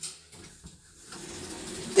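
Lift cabin arriving at a floor: a single click, then faint steady running of the lift machinery that grows louder through the second half.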